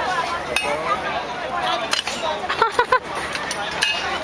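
Children's voices and chatter in a playground, with a few short, sharp sounds between two and three seconds in.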